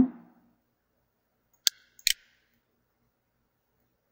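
Computer mouse clicking: one sharp click a little under two seconds in, then a quick double click a moment later, otherwise near silence.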